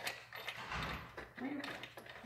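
Crinkling and rustling of a white packing-wrap sheet as two cats tumble about in it, with many small irregular clicks. A short low hum comes in near the end.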